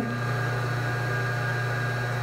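A steady low electrical or mechanical hum with a faint hiss over it, holding level throughout.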